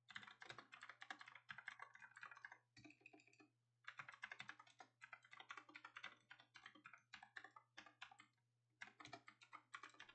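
Faint computer keyboard typing: quick runs of keystrokes, broken by two short pauses, one about a third of the way through and one near the end.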